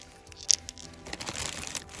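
Handling noise: a sharp click about half a second in, then crinkly rustling and crunching, over faint background music.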